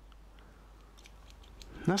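Faint, light clicks of the HX Outdoors EDC 020A's small folding scissor blades being worked in the fingers, ending in a man's voice.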